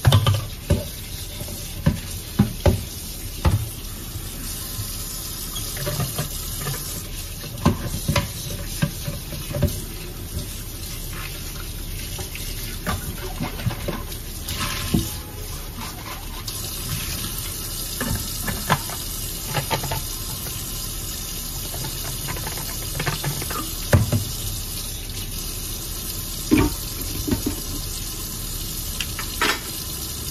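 Kitchen tap running steadily into a sink while pans are washed by hand, with frequent short clinks and knocks of cookware against the sink and each other.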